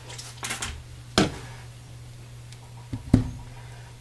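Handling sounds of a soap bar and clear acrylic soap stamp being set down and positioned on a paper towel over a glass cooktop: a brief rustle near the start, a sharp click about a second in, and a double knock about three seconds in, the second knock the loudest, over a steady low hum.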